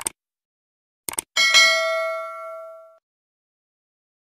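Sound effects of a subscribe-button animation. A short click comes first, then a quick double click about a second in. Right after it a bright notification-bell ding rings out and fades over about a second and a half.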